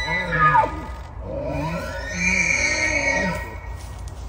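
Bull elk bugling: the falling tail of one bugle in the first second, then a second full bugle that climbs to a high whistle, holds for about a second and drops away, with a deep growl running under it.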